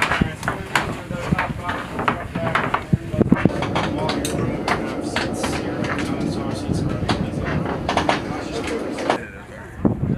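Boots of several soldiers walking on the metal cargo ramp and floor of a CH-47 Chinook helicopter: irregular knocks and scuffs over steady background noise. The sound drops away about nine seconds in.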